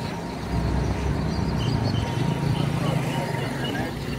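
People talking outdoors over a steady low rumble.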